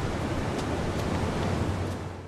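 Large wood fires burning: a steady rushing noise with a few faint crackles.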